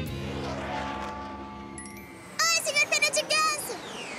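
Cartoon soundtrack: held music chords fade out over the first two seconds. Then, for about a second, a high wordless vocal warbles, a character crying out while gliding through the air, and a falling whistle-like glide follows near the end.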